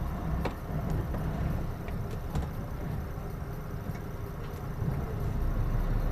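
Scania lorry's diesel engine running with a steady low rumble, heard from inside the cab as the truck moves slowly forward, with a few faint clicks.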